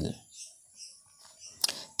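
A pause in spoken narration: the last word trails off, then near quiet, broken by one short, sharp click just before speech resumes.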